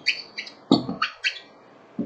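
A small bird chirping: a quick series of short, high chirps in the first second or so, then a lull.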